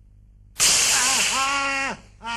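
A man's loud, drawn-out cry of pain, starting with a hiss about half a second in and lasting over a second, as a burning hair treatment is rubbed into his bald scalp.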